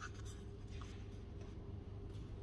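A paper book page being turned by hand: a short papery crackle and rustle in the first second. A steady low hum of the room lies underneath.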